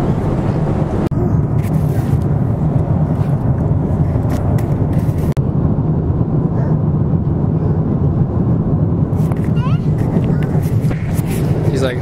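Steady low drone of a jet airliner's cabin in flight, with a faint voice near the end.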